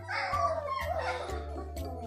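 Three-week-old German shepherd puppies crying out in high, wavering whines in the first second, over background music with a steady low beat.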